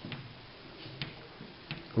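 Chalk tapping on a chalkboard as numbers are written: a few faint, sharp ticks.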